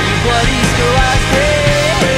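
Loud indie rock band music with drums, bass and guitars, carrying a melody line of sliding, bending notes that settles on a long held note near the end.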